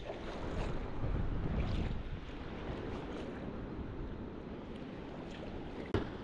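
Steady rush of flowing river water, with wind buffeting the microphone.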